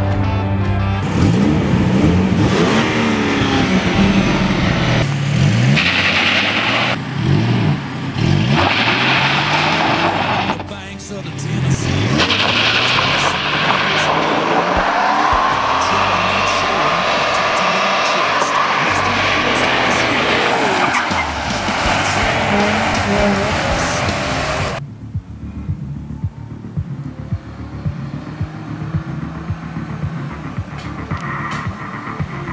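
A car's engine revving hard, its pitch sweeping up and down, with stretches of tyre squeal as the wheels spin in a burnout. About 25 seconds in it drops to a quieter, steadier running sound.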